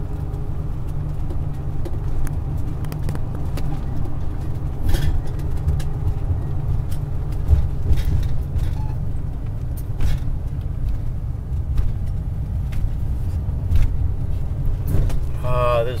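Steady low rumble of a car's engine and tyres heard from inside the cabin while driving, with a few faint clicks. A voice speaks briefly near the end.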